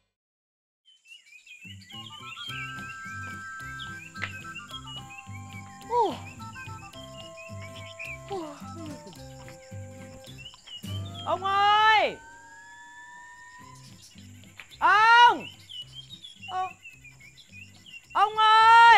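Light background music with birds chirping. Over it a woman calls out loudly several times, each call long and falling in pitch: once about eleven seconds in, again a few seconds later and once more at the end.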